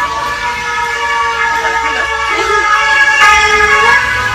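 A loud siren: one sustained wailing tone that drifts slowly in pitch and grows a little louder toward the end.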